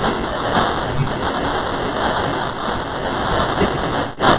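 Heavily distorted, effects-processed logo-animation audio: a harsh, steady noise like static, with no clear pitch or beat.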